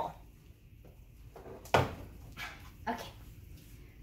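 Handling noise from a plastic ring binder of sheet music being lifted off an upright piano's music desk: one sharp knock a little under halfway through, then a few softer rustles and taps. A woman says a short word near the end.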